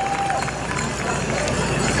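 Crowd chatter and general hubbub in a large stadium, with faint scattered clicks and a brief pitched note at the start.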